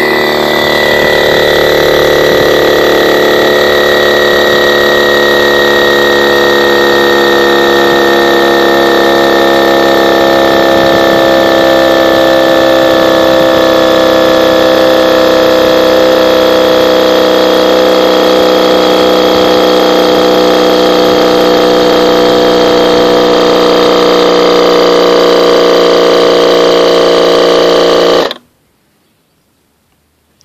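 Sevylor 12V high-pressure electric air pump running steadily as it inflates a kayak tube, its pitch slowly falling as it slows under the rising pressure. Near the end it shuts off suddenly, having reached its set pressure of 3.2 psi.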